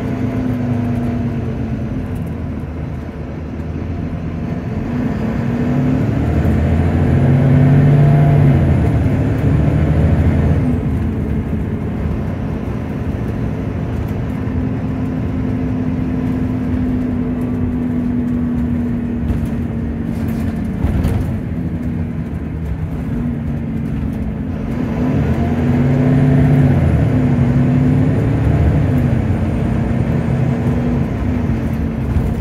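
Inside a moving double-decker bus: the engine and drivetrain run continuously, growing louder and changing pitch as the bus accelerates twice, with a faint high whine each time, and running more steadily in between. A brief rattle sounds about two-thirds of the way through.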